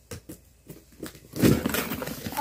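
Scissors snipping through the packing tape of a cardboard box in several short, sharp clicks, then the cardboard flaps and packing paper rustling more loudly as the box is pulled open, from about three-quarters of the way in.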